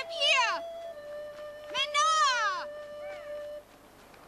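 A woman's high-pitched squeals of playful laughter, two loud bursts with falling pitch about two seconds apart and a short one after, over background flute music holding long steady notes.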